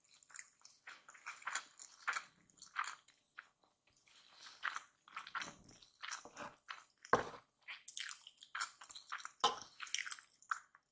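Close-miked chewing of kimchi fried rice: many short, irregular wet mouth sounds. Toward the end, a wooden spoon scrapes up rice from a wooden plate.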